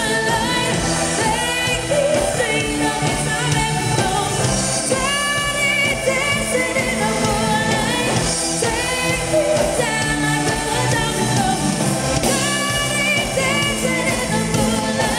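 Live pop band playing through a PA: female voices singing the melody over electric guitar, keyboard and drum kit, steady and loud with no breaks.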